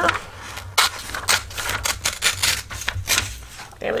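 A sheet of book paper being creased down its centre with a bone folder and handled, giving a run of short, crisp rubbing and rustling strokes, a few a second.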